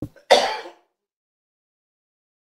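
A man clearing his throat once, briefly, into a handheld microphone.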